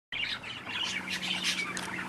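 Small birds chirping and twittering in quick, high, short notes, with a faint steady low hum coming in about a second in.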